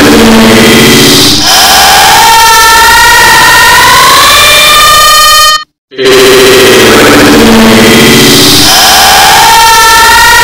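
Thousands of copies of the same short clip of a man's voice and scream playing on top of one another: a loud, distorted wall of overlapping yells with no words you can make out, sounding like a blaring horn with pitches rising through it. It cuts out briefly about six seconds in and then starts over.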